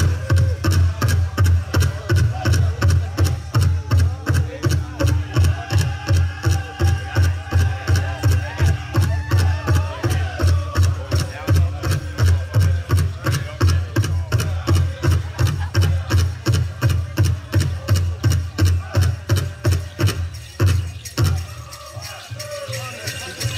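Pow wow drum group: a steady, loud beat on a large drum, about three strokes a second, with voices singing over it. The drumming stops about a second before the end.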